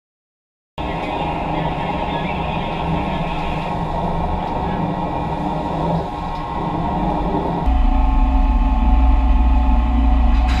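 Loud steady shipboard noise at a replenishment-at-sea receiving station, a dense rumble of machinery, wind and sea, with muffled voices. It starts abruptly about a second in, and the low rumble grows heavier near the end.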